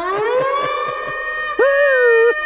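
A man's loud wailing cry, a cartoon boss bawling in distress. It starts as one long howl rising in pitch, then breaks into a louder, higher wail about a second and a half in.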